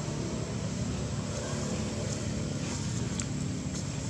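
Steady low background rumble with no clear pitch, with a few faint clicks in the second half.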